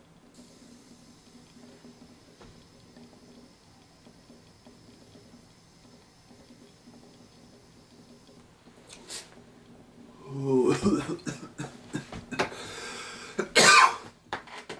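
A long, quiet draw on a cartridge vape battery, heard as a faint steady hiss of air for about eight seconds. About ten seconds in, a man breaks into a hard, repeated coughing fit, the sign of a big, harsh hit of vapour; the loudest cough comes near the end.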